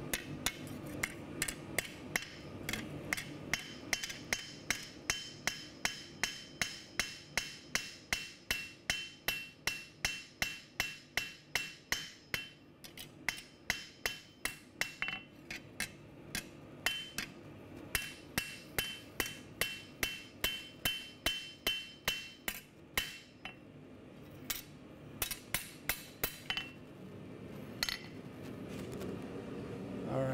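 Hand hammer striking a red-hot steel knife blade on an anvil to forge its bevel: a steady run of blows at about three a second, each with a bright metallic ring. The run breaks off briefly near the end, then a few last blows.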